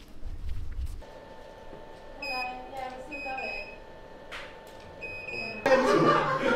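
A few short, high electronic beeps repeating over a steady electrical hum. Low wind-like rumble in the first second, and loud voices and laughter near the end.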